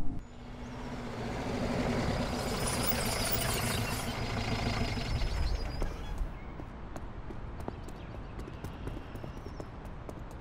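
A swelling rush of noise that builds and then fades over the first six seconds, followed by quick, irregular footfalls of people running on pavement.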